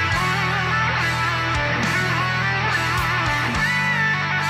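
Instrumental progressive metal track: electric guitars playing riffs with bent, sustained notes over steady low notes, which change pitch shortly before the end.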